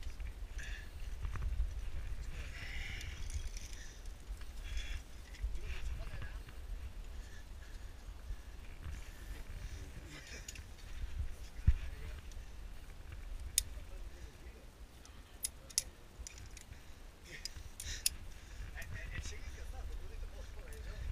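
Climbing gear on a lead climb: several sharp metallic clicks in the second half, as a quickdraw's carabiner is handled and the rope is clipped in. Under them run a low wind rumble on the head-mounted camera and soft rustling of hands and clothing on the rock.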